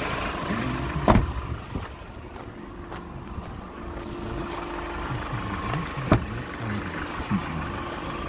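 A Hyundai Porter small truck's engine idling steadily close by, with two sharp knocks, about a second in and about six seconds in.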